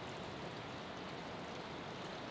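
Steady rushing of a fast-flowing river over rapids.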